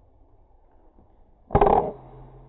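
A PCP air rifle firing once: a sharp, loud report about one and a half seconds in that dies away within a third of a second.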